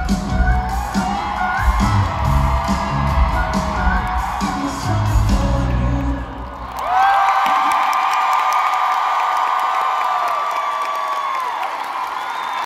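Live pop-rock band playing through an arena sound system, with heavy bass and drums, until the music stops about halfway through. An arena crowd then cheers and screams loudly and steadily.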